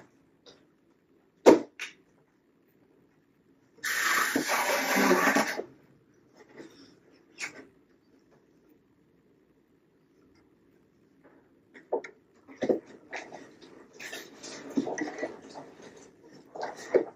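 Small handling noises from fingers working a silicone jig skirt on a hook held in a vise: a sharp click, a rush of noise lasting about two seconds, then light rustling and small clicks near the end.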